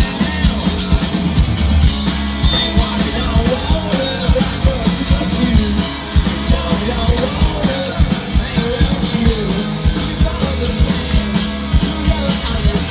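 Hard rock band playing live through a loud PA, heard from the crowd: distorted electric guitars, bass and a drum kit keeping a steady beat, with wavering melody lines over the top.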